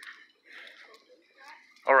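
Faint footsteps on a muddy dirt trail, soft and irregular, with a man's voice starting near the end.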